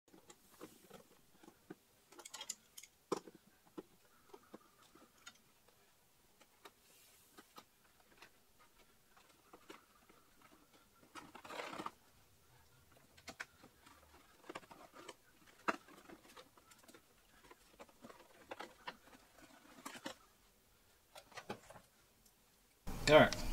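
Faint, irregular clicks and taps of hand tools against metal parts, with a short scraping rustle about halfway through.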